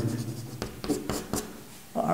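Chalk writing on a blackboard: a quick run of short scratching strokes and taps, then a pause near the end.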